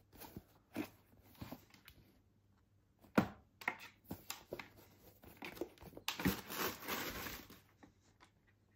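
Hands handling new Nike Mercurial Superfly 9 Academy football boots over their box: scattered taps and light knocks on the boots, a sharper knock a few seconds in, then a crinkling rustle of packing paper lasting about a second and a half near the end.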